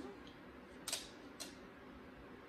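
Two short, sharp clicks about half a second apart: a bearded dragon biting into chopped vegetables in its food dish.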